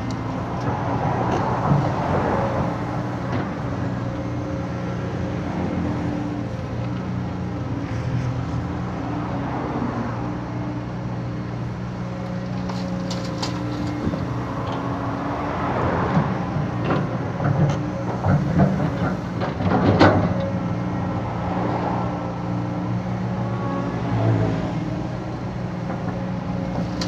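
Caterpillar hydraulic excavator's diesel engine running steadily under hydraulic load as it digs and swings. Soil and stones rattle as they are scooped and dropped into a steel dump-truck bed, in a spell near the start and again from about the middle to two-thirds through.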